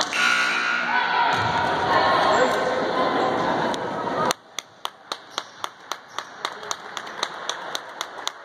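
Voices and chatter in the gym, cut off suddenly about four seconds in. Then a basketball is dribbled on the hardwood floor, about four bounces a second, slowly growing fainter.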